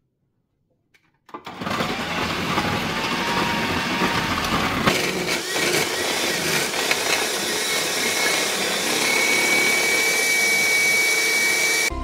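Electric food processor running as whole carrots are fed in and grated, a loud steady motor-and-cutting noise that starts about a second in. A steady high whine rises above it over the last few seconds.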